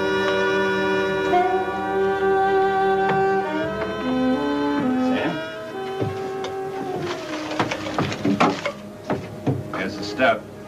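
Orchestral string score holding sustained chords, with cellos and violins, fading out around six seconds in. In the last few seconds it gives way to a series of short, sharp knocks.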